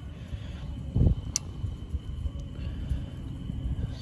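Handling noise from a hand working around the crankshaft inside a bare engine block: a low rumble with a dull thump about a second in and a short sharp click just after.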